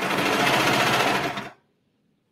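Brother serger (overlocker) stitching at a steady speed for about a second and a half, then stopping abruptly, as ribbing is sewn onto a sleeve edge.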